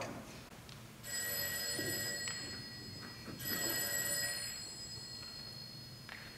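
Telephone ringing twice, each ring lasting about a second, the second beginning about two and a half seconds after the first.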